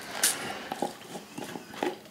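Plastic screw lid twisted off a jar by hand, heard as a few short clicks and scrapes spread over two seconds.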